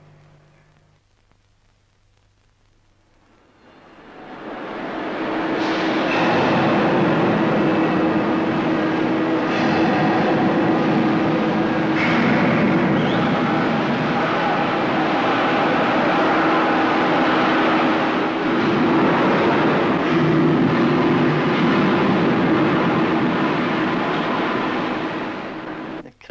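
Loud, dense shipyard work noise: heavy industrial machinery with a steady hum running through it and a few sharp knocks. It fades in over the first few seconds and eases off just before the end.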